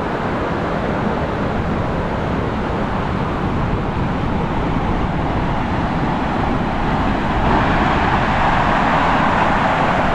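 Steady rush of ocean surf breaking on a beach, mixed with wind, growing a little louder and brighter in the last few seconds.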